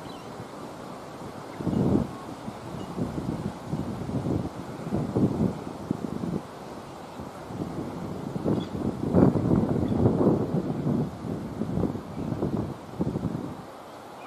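Wind buffeting an outdoor microphone in uneven gusts, strongest about two seconds in and again around nine to ten seconds in.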